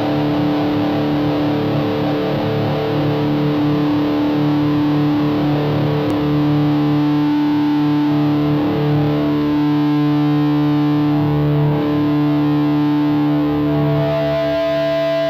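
Distorted electric guitar playing held, ringing chords, the notes sustaining steadily.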